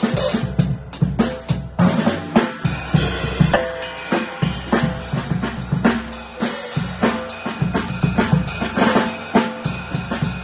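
Acoustic drum kit played live with sticks: a steady, busy groove of bass drum, snare and cymbals, with strikes coming several times a second throughout.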